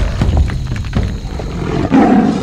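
Channel intro music sting with a heavy low rumble and several sharp hits, swelling into a lion-roar sound effect at the very end.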